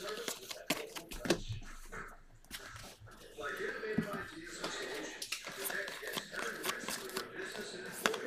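Stack of Topps Chrome baseball cards handled and flipped through by hand: light clicks and rustling of slick card stock as cards slide past one another and are set down on the table.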